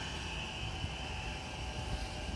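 Steady outdoor ambience: a low rumble of distant expressway traffic, with a steady high insect drone above it.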